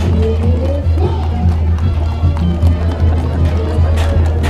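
Music with a deep, steady bass and a regular beat, with a voice over it.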